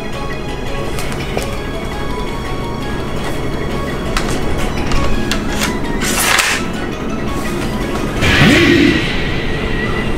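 Background music with a steady held backing, overlaid with two whooshing swish sound effects of the kind edited onto sword swings, about six seconds in and again near the end, the second sweeping upward into a held ringing tone.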